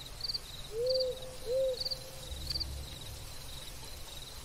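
An owl hooting twice, two short rising-and-falling hoots about half a second apart, over crickets chirping in a steady rhythm: a night-ambience sound effect.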